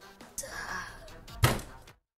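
Added fight sound effects over background music: a short rushing noise, then one loud thump about a second and a half in, after which the sound cuts off abruptly.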